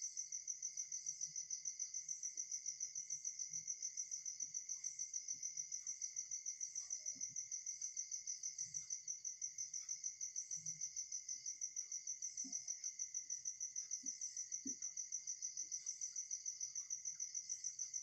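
A cricket chirping steadily in rapid, even pulses, with faint scratches of a marker drawing on a whiteboard.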